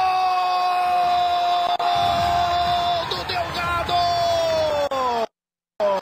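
A Brazilian TV football commentator's long drawn-out "Gol!" cry, held on one loud note for about five seconds, calling a goal. The note sags in pitch at the end and cuts off abruptly.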